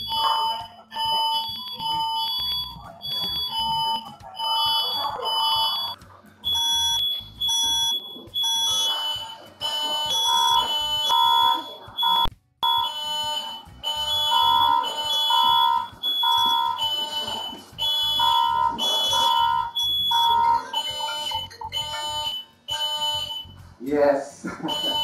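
First Alert smoke and carbon monoxide detector sounding in short, high-pitched repeated beeps, with a second, lower-pitched alarm tone beeping along with it, set off by smoke from broiling in the oven. The sound cuts out for a moment about halfway through.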